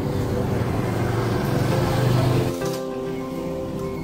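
Pneumatic impact wrench driving the bolts of a motorcycle brake disc, running for about two and a half seconds and then stopping suddenly. Background music plays under it.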